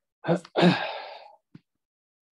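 A man's short voiced breath followed by a long breathy sigh that fades out over about a second.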